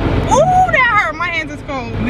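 A woman talking over a steady low rumble inside a car.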